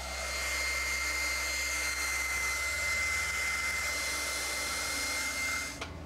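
Handheld hair dryer blowing on wet hair: it comes on, runs with a steady rushing air noise and a thin high whine, then cuts off sharply just before the end.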